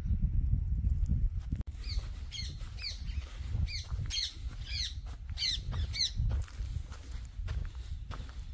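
A bird calling repeatedly outdoors: a series of about seven sharp, high, down-slurred notes, roughly two a second, over a steady low rumble.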